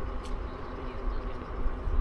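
Low, steady rumble of wind and road noise while riding a NIU KQi2 Pro electric kick scooter.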